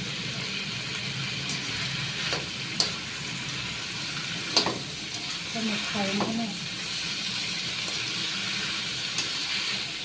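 Squid sizzling in hot oil in a wok while a slotted metal spatula stirs and scrapes it, with a few sharp clicks of the spatula against the pan, the loudest about four and a half seconds in.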